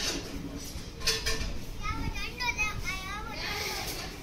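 Background voices, with high-pitched children's voices calling for about a second and a half near the middle.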